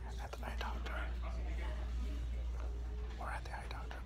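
Hushed, whispered speech over a steady low hum.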